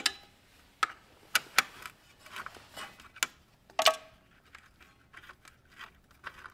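Sharp, irregular metal clicks and clinks of a hex key and bolt being worked out of an electric dirt bike's motor mount. The loudest click, with a short ring, comes a little under four seconds in; fainter ticks follow.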